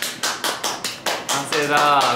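Hands clapping quickly, about nine claps over a second and a half, on finishing a handmade bracelet.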